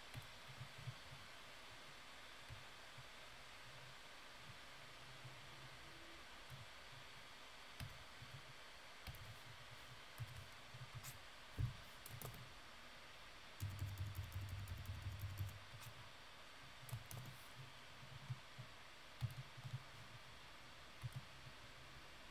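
Faint scattered clicks and taps from working a computer's input devices, with a rapid run of clicking about two-thirds of the way through, over a low steady hiss.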